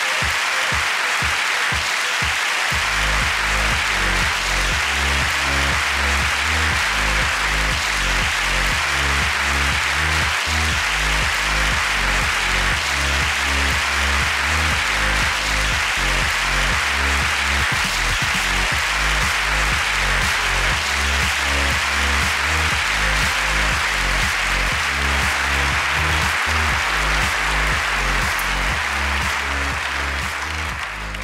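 A large audience applauding steadily over play-on music with a strong moving bass line, which comes in about two and a half seconds in.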